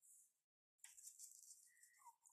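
Near silence with faint, brief scratchy hissing: a paintbrush being worked in gouache, brushed on paper and then scrubbed in a paint pan.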